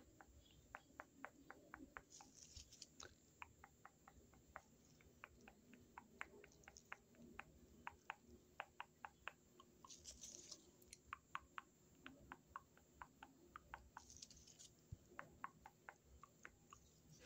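Toothbrush bristles brushed against the microphone: faint, quick ticks, about three or four a second, with a few brief scratchy swishes.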